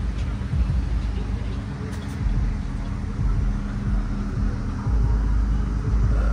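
Dodge HEMI V8 engines idling with a steady low rumble, which grows heavier about five seconds in.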